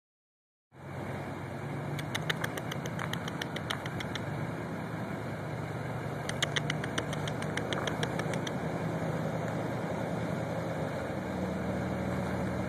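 Car engine idling steadily, a low even hum. Two runs of sharp clicks cut through it, one about two seconds in and one about halfway through.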